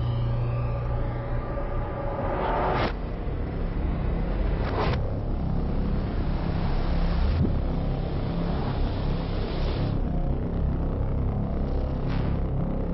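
Film sound design: a low, steady rumbling drone with rising whooshes that cut off sharply about three and five seconds in, and a longer swell that ends near ten seconds.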